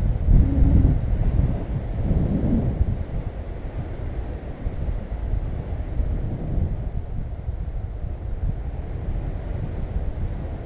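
Wind rushing over the camera microphone in flight on a tandem paraglider, a steady low rumble that is louder for the first three seconds.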